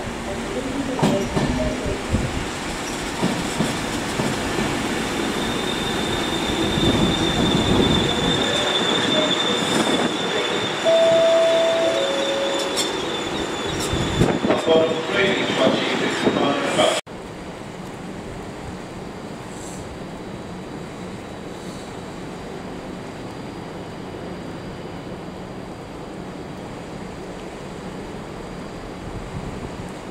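Avanti West Coast Class 390 Pendolino electric train running past on the platform road, with wheels and rails rumbling and a high steady wheel squeal for several seconds. A brief two-note tone sounds about eleven seconds in. The train noise cuts off abruptly a little past halfway, leaving a steady low hiss.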